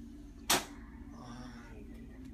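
A single sharp click about half a second in, against a steady low hum.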